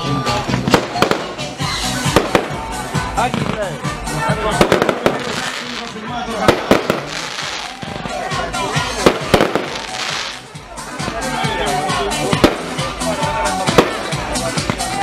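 Aerial fireworks bursting overhead in a fast, irregular run of sharp bangs and crackles, with voices and music underneath.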